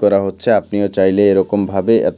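A man's voice speaking without a break.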